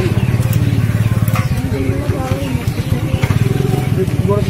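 Men talking over a steady, low, rapidly pulsing engine rumble, like a motorcycle idling close by.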